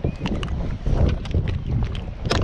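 Irregular knocks and handling rustles as a freshly caught blue cod is grabbed by hand off the line, over a low rumble.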